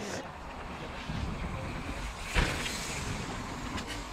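Steady rumbling wind noise on an action camera's microphone, with one brief knock about two and a half seconds in.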